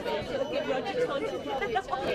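Indistinct chatter of several people talking at once inside a tram carriage.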